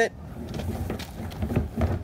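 Plastic wheeled trash bin being tipped and shaken to drain water out of it: faint, irregular knocks and water spilling out.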